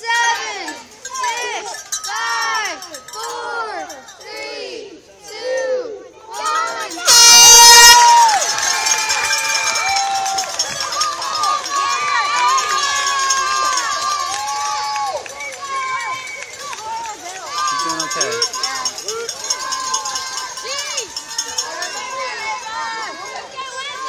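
Voices call out in a steady rhythm, about one call a second. Then a start horn sounds once for about a second, seven seconds in, the loudest sound. After it, spectators cheer and shout continuously as the swim starts.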